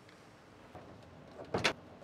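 Faint room tone, then a brief clatter of a few quick knocks about one and a half seconds in, from hand tools being handled at the car's rear trim panel.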